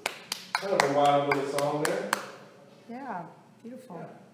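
A man's voice, with a run of sharp taps in the first two seconds, after which a few short spoken sounds follow.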